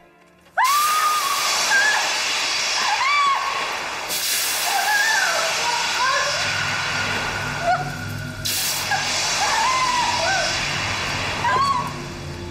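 A loud hiss of steam starts suddenly about half a second in and surges louder twice, while a woman screams and wails in pain over it. Low dramatic music comes in underneath about halfway through.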